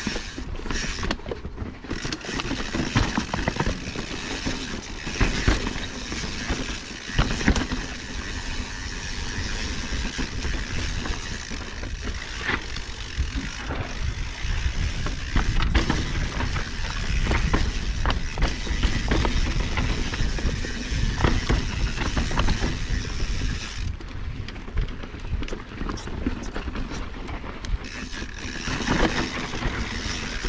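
Mountain bike rolling over rocky dirt singletrack: tyres crunching over rock and gravel, with frequent sharp knocks and rattles from the bike, over a constant low wind rumble on the handlebar camera's microphone.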